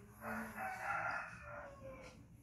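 One long animal call lasting under two seconds, falling in pitch near its end.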